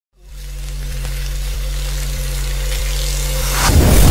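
Cinematic logo-intro sound effect: a low steady drone fades in and swells, then a rising whoosh leads into a deep boom about three and a half seconds in.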